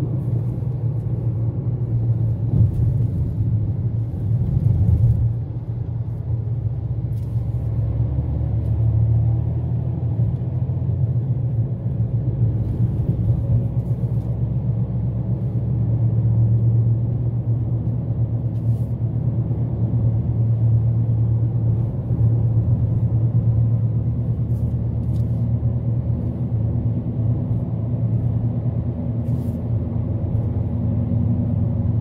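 Car cabin noise while driving: a steady low drone of engine and road noise heard from inside the car, with a few faint clicks.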